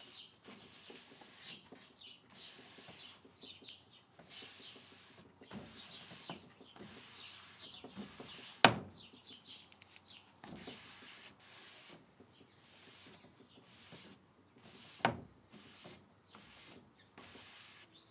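A paper towel damp with mineral spirits rubbed in repeated wiping strokes over a veneered wood drawer front, lifting excess white gel stain. A sharp knock about halfway through, and a smaller one near the end.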